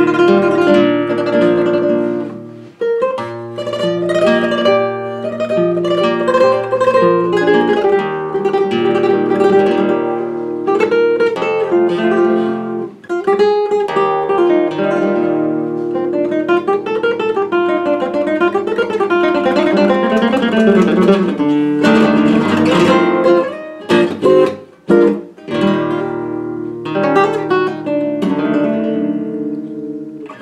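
Solo flamenco guitar playing a rondeña in its special tuning, sixth string lowered a tone and third a semitone, capo at the first fret. Flowing plucked passages with rising and falling arpeggios give way to a cluster of sharp strummed chords about three-quarters of the way through.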